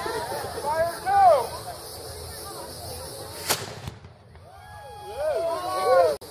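A single black-powder gun firing about three and a half seconds in, heard as one short, sharp crack. The camera's audio squashes the blast, so it sounds much weaker than it was, and the sound drops away briefly right after it.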